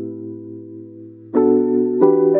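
Soft background music: a held chord fades away, and a new chord is struck near the end.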